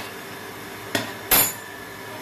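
Steel cookware clanking in a kitchen: two metal knocks about a second in, the second louder and ringing, over a steady background hiss.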